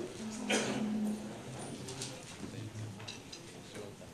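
People getting up from their chairs: chairs shifting and knocking, with a few sharp knocks and low murmuring voices.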